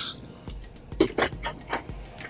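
Several light clicks and knocks as a plastic case fan is set down and shuffled against the perforated metal floor of a PC case.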